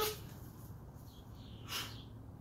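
A quiet pause with a faint steady hum, broken near the end by one short, hissing breath from a man holding a push-up plank.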